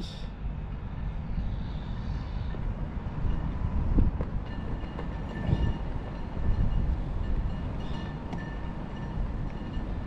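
Steady low outdoor rumble, with faint thin high whining tones coming and going; no distinct event stands out.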